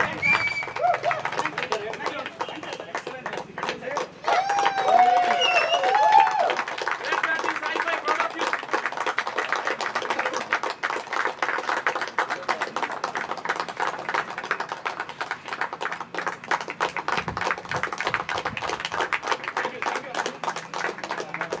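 A group of people clapping their hands, a dense patter of claps that grows fuller about halfway through. A voice calls out briefly about four to six seconds in.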